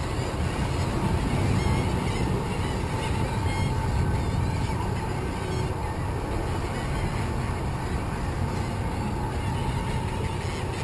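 Boat motor running steadily at low speed, with a steady whine over the hum and water and wind noise around it.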